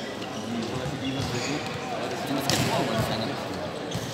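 Indistinct chatter of players and spectators echoing in a large indoor sports hall, with a single sharp smack about two and a half seconds in, like a volleyball hitting the floor or hands.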